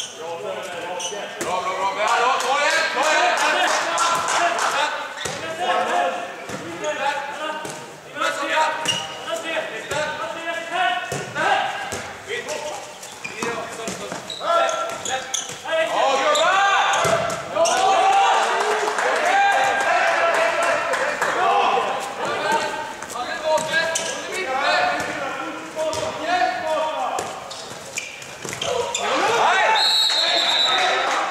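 A handball bouncing repeatedly on an indoor court floor, with voices calling throughout, echoing in a large sports hall.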